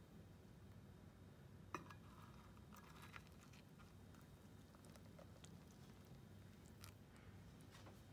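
Near silence: thick lemon custard being poured into glass dessert cups over broken biscuits, heard only as a soft patter and a few faint clicks over a low hum.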